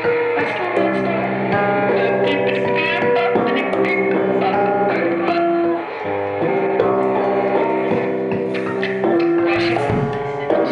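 Electric guitar laid flat and its strings struck with a mallet, amplified: layered held ringing tones that shift in pitch, punctuated by frequent sharp strikes.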